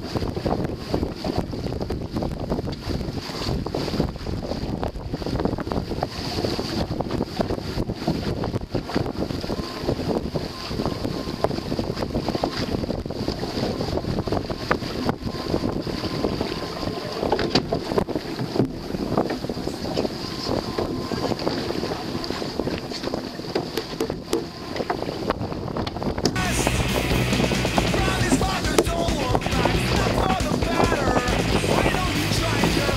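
On-deck sound of a racing keelboat under sail: a steady rush of wind and water with scattered small clicks and knocks from deck gear. About 26 seconds in the sound changes abruptly to louder, brighter wind buffeting on the microphone.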